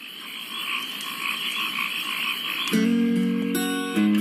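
A chorus of frogs croaking as the intro to a country song; acoustic guitar comes in about two-thirds of the way through.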